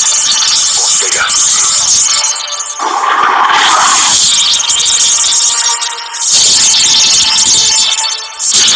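Movie-trailer soundtrack playing loudly: music with a dense, hissy wash of sound that dips briefly about three seconds in and again near six seconds.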